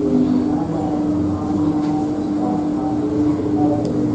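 A steady humming drone, with fainter held tones coming and going above it; the main hum weakens a little near the end.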